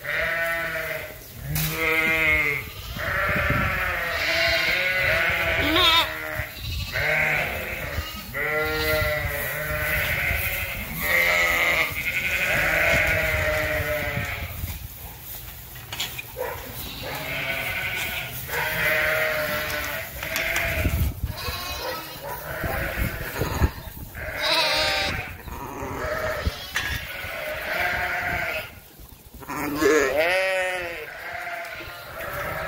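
A flock of sheep, ewes and young lambs, bleating over and over, with many calls overlapping one another throughout.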